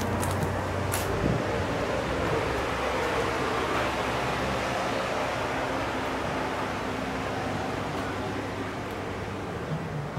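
Steady background noise with a low hum; it holds even throughout, with no distinct events.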